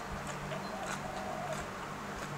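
A person chewing a mouthful of fresh raw vegetables, with faint small mouth clicks, over the steady hum of an electric fan.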